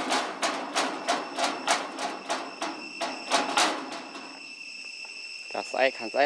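A rapid run of knocks or rattles, about three a second, that stops after about three and a half seconds, over a steady high insect drone. A short voice-like call comes near the end.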